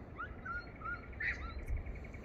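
Birds chirping: a string of short, curved chirps, with a brief burst of calls a little past the middle and a fast, even trill in the second half, over a low rumble.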